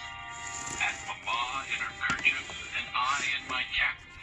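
The pop-up book's built-in sound module playing music with a recorded voice, part of its story-reading feature.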